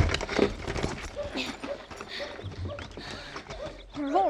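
Horse hooves clip-clopping and shuffling in irregular knocks, a radio-drama sound effect, with faint men's voices behind them.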